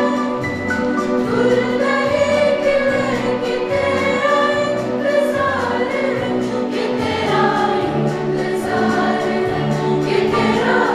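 A mixed school choir of boys and girls singing together, a steady, continuous passage of a song.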